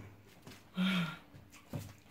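A person's short voiced grunt or exclamation about a second in, with a faint knock near the end.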